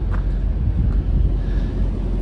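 Wind buffeting the microphone outdoors: a loud, uneven low rumble with no distinct tones.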